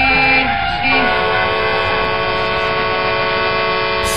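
A long held chord of steady tones fills a break in the rock song. It shifts to a fuller chord with more pitches about a second in and holds evenly until the music comes back.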